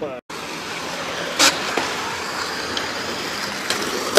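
Skateboard wheels rolling on a concrete bowl, a steady rolling noise, with one sharp clack about a second and a half in.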